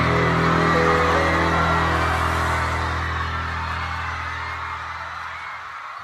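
Instrumental ending of a Chinese pop ballad: held chords over a steady bass line, fading out gradually.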